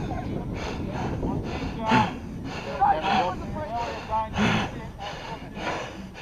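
A footballer running with the camera: rhythmic heavy breathing and footfalls, about two a second, with faint shouts of other players across the ground.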